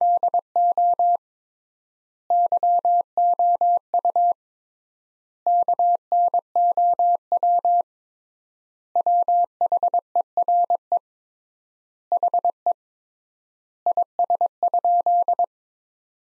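Computer-generated Morse code: a steady mid-pitched beep keyed into dots and dashes at 22 words per minute. It comes in six word groups, each separated by a gap of about a second, the extra-wide word spacing of a practice sentence.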